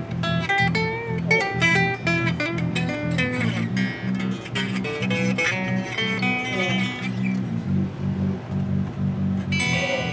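Unplugged Jay Turser Les Paul-style electric guitar fingerpicked in a run of single notes and arpeggios, played to check for string buzz after one side of the action was raised.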